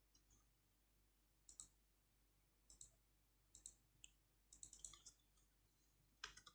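Faint clicks of a computer keyboard and mouse: a few separate keystrokes and clicks, then a quick run of keystrokes about two-thirds of the way in.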